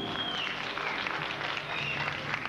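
Audience applauding in a hall just after a rock song ends, with a high sustained tone fading away in the first half-second.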